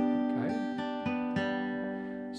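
Acoustic guitar playing a G major chord on the top four strings, fretted as an F-chord shape moved up to the third fret. The chord rings out and slowly fades, struck lightly again twice after about a second.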